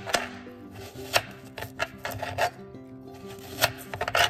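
Kitchen knife cutting through watermelon rind and flesh, with a crunching rasp and several sharp, irregular clicks as the blade hits a glass cutting board. Background music plays underneath.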